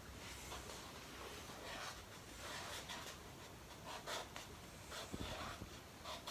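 A pen writing on a paper cup: faint, short strokes at irregular moments with pauses between them.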